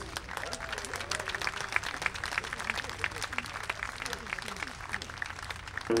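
Audience applauding: a steady patter of many scattered hand claps, with faint voices in the crowd.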